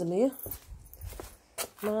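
A person speaking, with a low rumble and a few faint clicks in the pause between phrases.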